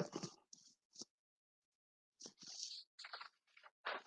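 Mostly near silence, with faint, short rustling and clicking noises scattered through the second half.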